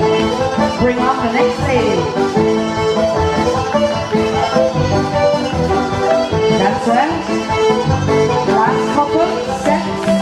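Live Irish traditional dance music from a three-piece céilí band, playing for set dancing.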